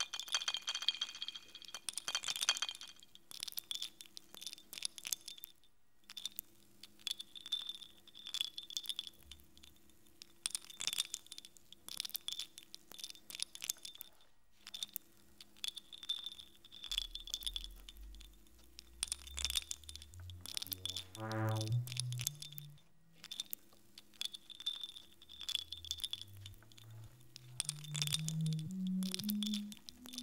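Live electronic music made from processed water samples: scattered clicks and glassy chiming over a held high tone and a low drone. In the second half, low synthesized tones climb step by step, twice.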